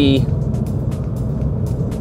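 Cabin noise of a Mini Cooper SD on the move: the steady low drone of its diesel engine and tyres on the road, heard from inside the car.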